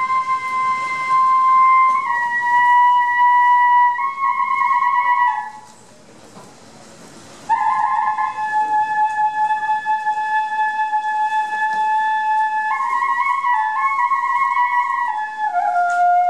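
Kagura bamboo flute (fue) of the Iwami kagura ensemble playing long held notes that step slightly down and back up, with a few wavering, trilled passages. It breaks off for about two seconds in the middle, then comes back on a lower held note.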